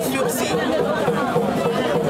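Several people talking at once, a steady chatter of overlapping voices.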